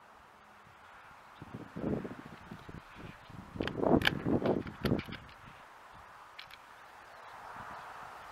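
The bolt of a Savage Model 10 bolt-action rifle being worked by hand: a few clicks about two seconds in, then a louder run of metallic clacks around four seconds in as the bolt is opened and drawn back to extract the fired .308 case.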